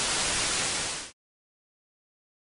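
TV static: a steady white-noise hiss that cuts off suddenly about a second in.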